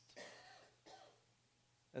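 Near silence, with two faint, short breathy sounds from a person in the first second.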